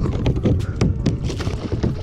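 A tarpon thrashing in a mesh landing net on a plastic kayak: a fast, irregular run of knocks, slaps and splashes as the fish flops against the hull and the water.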